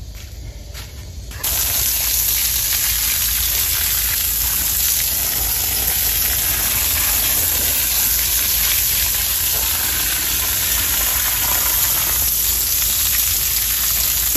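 Steady spray of water on stone stepping stones, washing play sand into the gaps between them. It starts suddenly about a second and a half in and keeps an even hiss.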